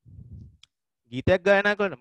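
Speech only: a man's voice resumes speaking about a second in, after a brief pause that holds only a faint low rumble.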